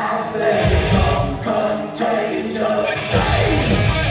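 Heavy metal band playing live, with sung vocals over electric guitars, bass and drums; the low end thickens again about three seconds in.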